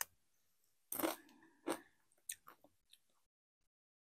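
Crunching of a Doritos tortilla chip being bitten and chewed: a loud crunch about a second in, another just after, then a few fainter crunches that die away.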